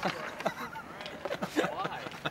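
Men laughing in a few short, broken bursts with gliding pitch, quieter than the talk around them.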